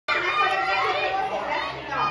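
Chatter of several voices talking at once.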